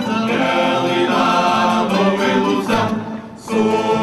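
Tuna ensemble music: a group singing in chorus over plucked guitars and mandolins, with a short drop in level just before the end.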